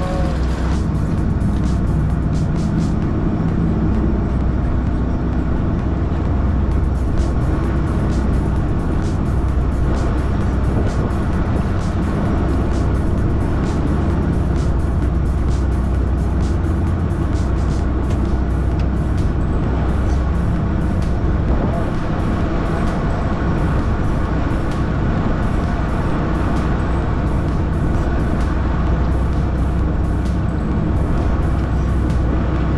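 Steady low drone of a fishing boat's engine running, with background music laid over it.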